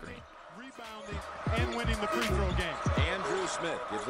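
Televised basketball game sound: a basketball dribbled on a hardwood court over arena crowd noise, with a broadcast commentator's voice coming in about a second in.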